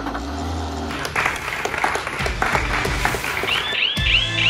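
Clapping from a crowd over background music with a steady beat.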